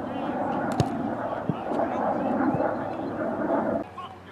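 Indistinct voices over a steady outdoor din, with a few short sharp knocks; the sound cuts off abruptly just before the end.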